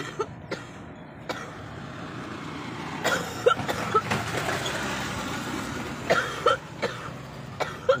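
A woman with asthma coughing in short fits, her breathing troubled. A motorcycle passes close by in the middle.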